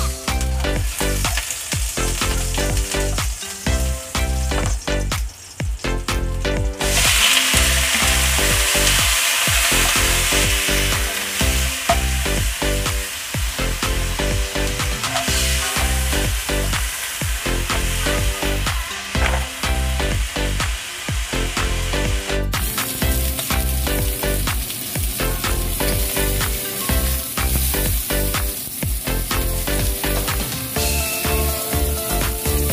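Oil sizzling in a wok as garlic and then oxtail pieces fry, with a spatula stirring and scraping; the sizzle becomes much louder about seven seconds in. Background music with a steady beat plays throughout.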